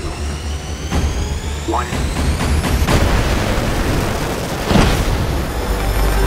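Film soundtrack of fighter jets launching from an aircraft carrier: a jet engine's whine rises steadily over the first three seconds, then gives way to a loud rush of jet noise over a deep rumble, peaking about five seconds in, with music underneath.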